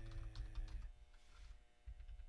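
Faint, scattered keystrokes on a computer keyboard, following a man's drawn-out hummed "mmm" that trails off about a second in.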